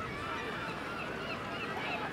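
Harbour ambience: many short, scattered, distant cries and calls over a steady background murmur.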